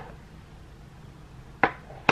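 Mostly quiet, then one sharp click near the end as a small loose-powder cosmetics jar is handled over the hand.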